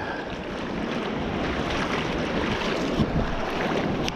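Steady wind rumbling on the microphone, with small waves washing over the wet sand of the shallows.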